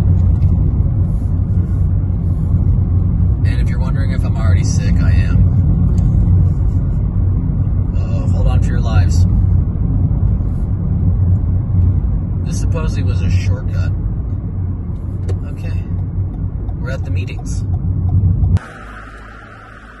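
Steady low rumble of a car's engine and tyres heard from inside the cabin while driving. It cuts off suddenly near the end.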